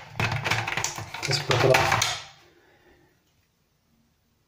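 A man speaking briefly, then near silence for the last second or so.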